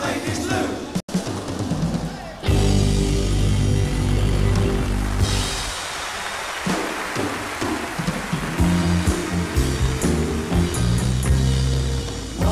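Live band playing electric guitars, bass and drums in a passage without singing, long held chords ringing out. The sound cuts out for an instant about a second in.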